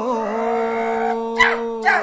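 A singer holds one long, steady note at the close of a Carnatic-style vocal phrase. Two short sharp accents come near the end.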